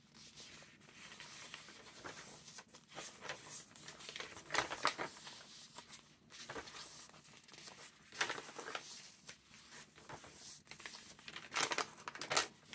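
Large handmade junk journal's heavy, grungy paper pages rustling and crinkling as they are turned by hand, with louder page flips about five seconds in, about nine seconds in and near the end.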